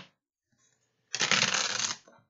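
A deck of reading cards being shuffled by hand: one short run of card noise, under a second long, starting about a second in.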